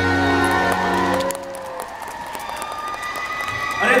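A pop song's backing track ends on a held chord that stops about a second in, followed by an audience clapping and cheering.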